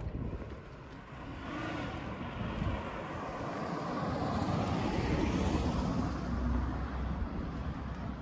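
A car passing along the road, its tyre and engine noise swelling to a peak about five seconds in and fading away near the end.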